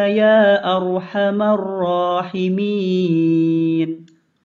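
One voice chanting an Arabic prayer in a slow, melodic recitation, with long held notes that glide gently in pitch and short breaks between phrases; the chant stops near the end.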